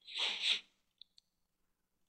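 A short burst of breath noise from the narrator in two quick pushes, followed about a second later by two faint computer-mouse clicks.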